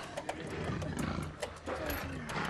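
Tiger growling low behind the barred gate, with sharp metallic clicks from keys being worked into the locks.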